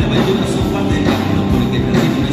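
A rock band playing loud live music: electric bass and guitar over a drum kit, with drum hits landing about twice a second.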